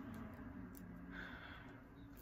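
Faint room tone with a low, steady hum.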